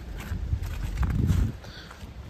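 Footsteps on a pavement covered in thin, wet snow and leaves, about two steps a second, under a low rumble that cuts off about a second and a half in.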